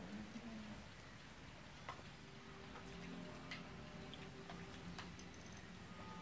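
Faint, scattered clicks of chopsticks and spoons tapping against bowls and the mookata grill pan, over a faint low hum.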